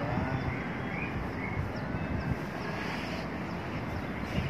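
Outdoor ambience: a steady low rumble of wind on the microphone and distant traffic, with a few faint short chirps in the first second or so.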